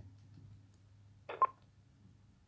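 A single short electronic beep about a second and a half in, over a faint steady low hum.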